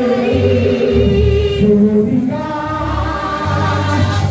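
A church congregation singing a gospel song together in held notes, led by a woman's voice on a microphone.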